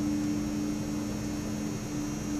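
Steady room hum, two low tones held level over a faint high hiss, like an appliance or electrical hum in a quiet room.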